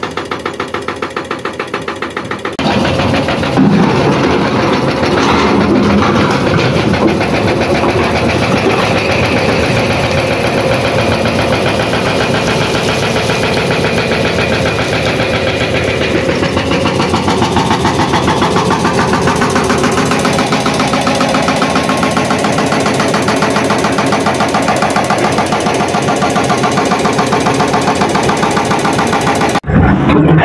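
Excavator-mounted hydraulic rock breaker hammering rock with rapid, even blows for the first couple of seconds. It gives way abruptly to a louder, steady diesel engine of the earthmoving machinery running, its pitch dipping slightly midway.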